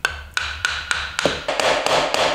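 A hammer tapping repeatedly on the head of a Japanese hand plane's (kanna's) wooden body, about three sharp knocks a second. This is how the plane iron and chipbreaker are loosened and backed out of the block.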